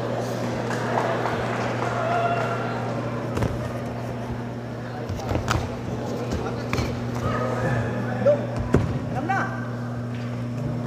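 Live boxing venue ambience: indistinct voices of people calling out, over a steady low hum, with a few sharp smacks of punches landing scattered through it.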